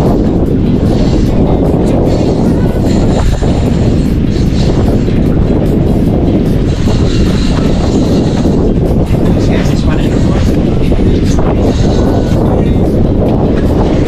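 Loud, steady rumbling noise of wind buffeting the camera's microphone on an open boat at sea.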